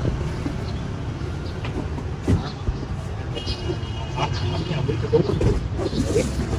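Steady low rumble of an idling delivery van engine, with a few short knocks as parcel boxes are handled and a faint high tone for about a second near the middle.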